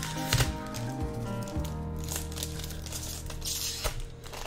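Background music with steady held notes, over the crinkle and tear of a foil Pokémon TCG booster pack being opened by hand, with a brief hissing rip about three and a half seconds in.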